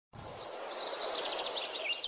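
Birds chirping, quick repeated high notes over a steady rushing hiss, fading in from silence and growing louder.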